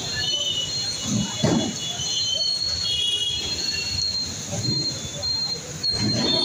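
Busy street traffic noise with high, thin squealing tones that come and go throughout.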